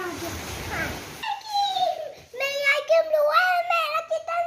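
About a second of rustling noise, then a child's voice making a long, drawn-out wordless sound held at a steady pitch.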